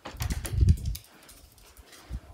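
A Yorkshire terrier's claws clicking on a tiled floor, with low thumps from footsteps or handling, over the first second; then quiet.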